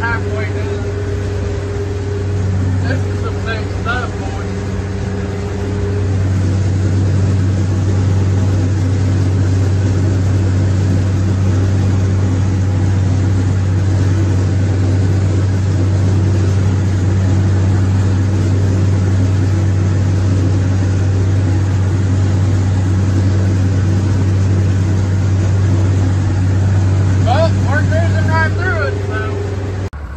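Allis-Chalmers 7000 tractor's diesel engine running steadily under load from inside the cab, driving a PTO mower-conditioner through hay. The drone gets a little louder about six seconds in.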